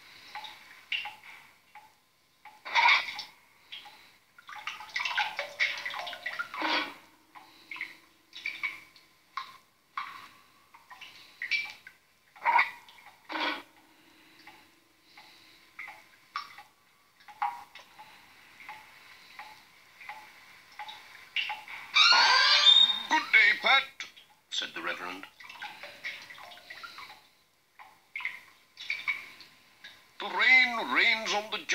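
Water dripping from a leaking roof into a metal bucket: a run of irregular drips and plinks, a few of them ringing on briefly. About 22 seconds in there is a louder burst of voice-like sound.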